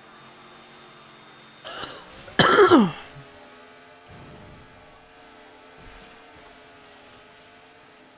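A man clears his throat once, about two and a half seconds in: a short, rough sound that falls in pitch.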